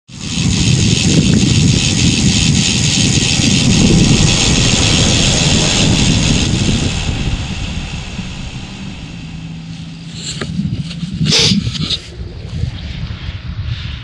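Outdoor rumble and hiss of a vehicle passing on a road: loud for about the first seven seconds, then fading away. A couple of short knocks near the end.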